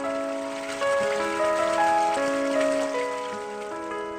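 Slow piano background music with sustained notes, over the steady splashing of running water from a small stream.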